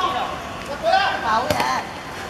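Players shouting, with one sharp kick of a football about one and a half seconds in.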